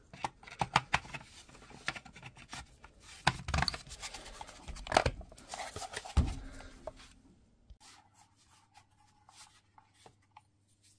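Plastic power-tool battery case and cell pack being handled and pressed together: an irregular run of clicks, knocks and scraping, with a few louder knocks. After about seven seconds it settles to faint ticks.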